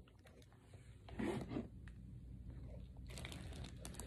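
Faint rustling and handling noise, with one brief louder rustle about a second in.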